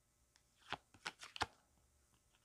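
Tarot cards being handled as one is drawn from the deck: a cluster of light, quick clicks and flicks of card stock, starting a little under a second in and lasting about a second.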